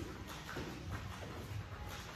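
Bare feet landing softly on a hard floor during slow jumping jacks: a few faint, regular thuds.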